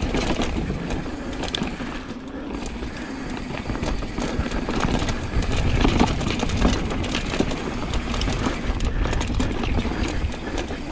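Downhill mountain bike rolling fast down a dirt and rock trail: tyre noise over the ground with a constant rattle of clicks and knocks from the chain and frame, over a low rumble.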